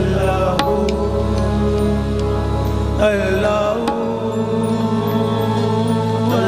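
Qawwali music: a harmonium drone with singers holding long notes. The voices waver and slide near the start and again about three seconds in, and there are a couple of sharp plucks early on.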